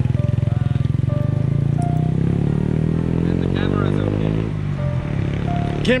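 Small moped engine pulling away, its pitch rising steadily for a few seconds as it accelerates, then falling off.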